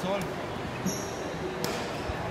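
Kicked feathered shuttlecock in play: two sharp knocks of a foot striking it, one at the start and one about 1.6 s in, and a short high squeak near the middle, in a large hall with voices of players and onlookers.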